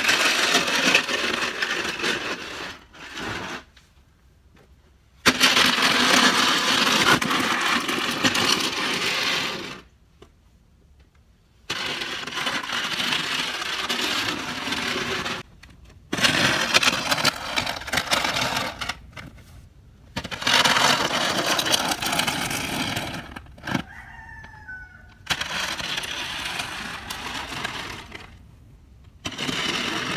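Wide plastic snow-pusher shovel scraping along a driveway as it pushes light snow, in long strokes of several seconds each with short pauses between them.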